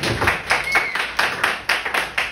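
Audience clapping: a dense run of claps from a small crowd.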